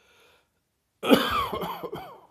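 A person with a heavy chest cold coughing: a faint breath, then about a second in a loud, rough coughing fit of several hacks run together, lasting most of a second.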